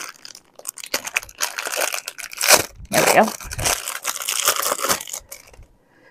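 Packaging crinkling and tearing by hand in irregular bursts as a wrapped item is opened.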